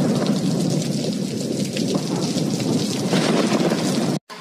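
Rain-sound ringtone: a recording of heavy rain, a steady dense hiss with a low rumble.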